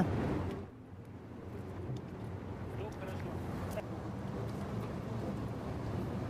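A container being filled with river water: a low, steady outdoor rush with a few faint knocks.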